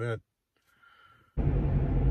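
A man's last spoken word, then a pause, then about one and a half seconds in an abrupt cut to loud, steady engine and road noise from inside a moving SUV.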